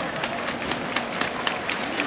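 Scattered handclaps from a stadium crowd, a few sharp claps a second, over a steady open-air hum.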